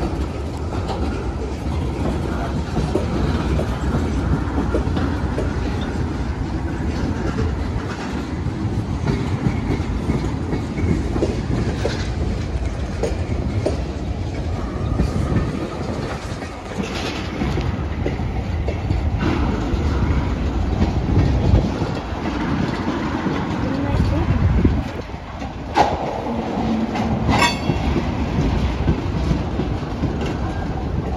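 Freight train of tank cars and centerbeam lumber cars rolling past at close range: a steady rumble with the wheels clicking over rail joints, and one sharp clank near the end.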